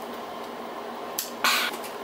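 A person sipping a Slurpee through a straw: quiet at first, then a short click and a brief breathy noise about one and a half seconds in.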